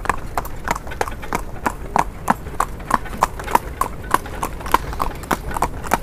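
A cart horse's hooves clip-clopping on an asphalt road in a steady, even rhythm of about three strikes a second.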